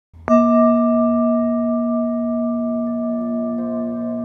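A singing bowl struck once, just after the start, then ringing on with several clear overtones that fade slowly. Faint further tones join in near the end.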